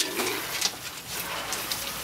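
Pigs feeding with their snouts in straw, giving a low rustling and munching with a few small clicks and a short low sound just after the start.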